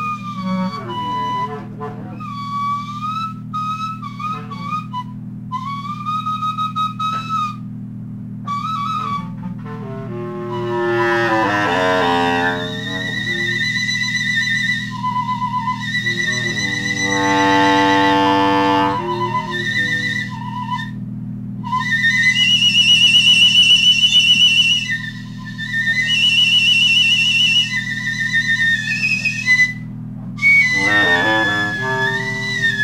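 Free-improvised jazz from a wind instrument: high held tones that waver and slide in pitch, broken by short pauses. Fuller, reedier notes come in about ten seconds in and again past the middle. A steady low sound sits underneath throughout.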